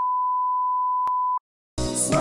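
A steady, pure test-tone beep at one pitch, cut off abruptly about a second and a half in, with a faint click shortly before it stops. Music starts near the end.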